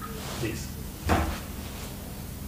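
A single short thump about a second in, over a steady low room hum.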